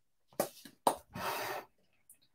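Craft supplies being rummaged through in search of a stylus: a couple of sharp clicks and small knocks, then a short rustling scrape about a second in.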